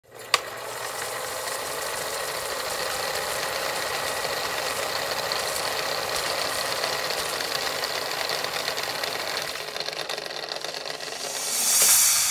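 Old film projector sound effect: a sharp click just after the start, then a steady mechanical clatter with crackle, easing off near the end, where a rising whoosh swells in.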